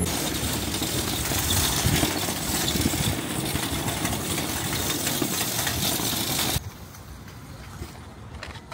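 Metal shopping cart rolling over parking-lot asphalt, a loud, steady rolling noise from its wheels and wire basket that cuts off abruptly about six and a half seconds in, leaving faint clicks.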